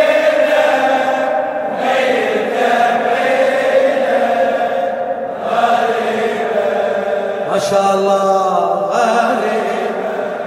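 Men's voices chanting a Shia mourning lament (latmiyya) together, in long, drawn-out, wavering lines.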